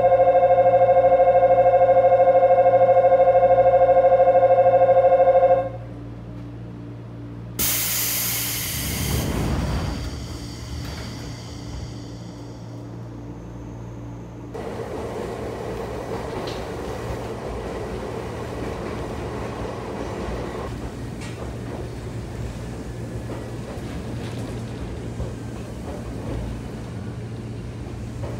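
A station departure bell rings steadily for about six seconds on a Nagano Electric Railway local train standing with its doors open. A couple of seconds after the bell stops comes a sudden hiss of air that fades away as the doors close. About fifteen seconds in, the train's steady running noise starts as it pulls away.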